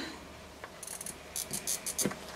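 A fabric marking tool drawn along the edge of a clear ruler on fabric: a few faint, high, scratchy strokes in the second half.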